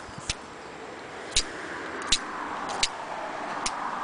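Snap-off utility knife whittling a wooden stick to a point: five sharp clicks of the blade's carving strokes over a soft scraping hiss.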